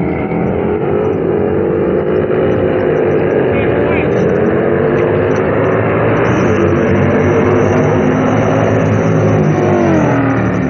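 Harley-Davidson V-twin motorcycles racing at full throttle toward the camera, their engine note climbing and growing louder, then dropping sharply in pitch as they pass right at the end.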